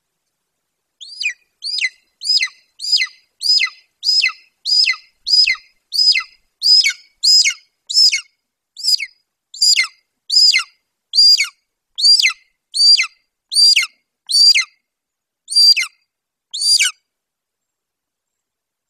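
Golden eagle calling: a long series of about twenty high, thin whistled calls, each sliding steeply down in pitch. They come about two a second at first and space out a little toward the end.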